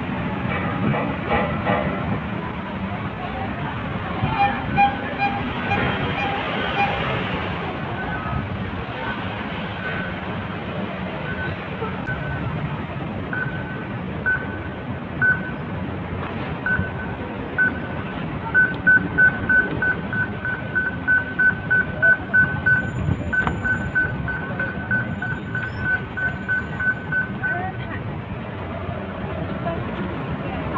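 Pedestrian crossing signal beeping: single beeps, spaced out at first, then a quick run of about three beeps a second lasting roughly ten seconds. Street traffic and crowd chatter run underneath.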